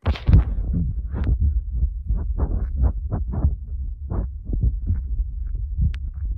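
Phone microphone handling noise as the phone is held and moved about: a continuous low rumble with irregular bumps and rubbing.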